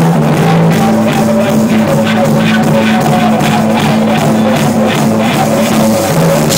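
Live rock band playing: electric bass, electric guitar and drum kit, with a steady drum beat under held bass notes.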